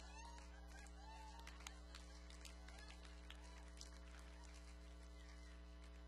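Near silence: a steady electrical hum from the sound system, with a few faint clicks.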